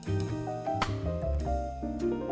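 Instrumental jazz ballad recording: bass notes and held chords with light drum kit, and a sharp percussive accent just under a second in.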